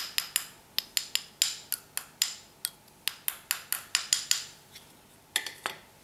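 Plastic measuring spoon clicking against a ceramic plate while stirring a baking-soda and lemon-juice paste: quick sharp clicks about four a second, stopping after about four and a half seconds, then two more near the end.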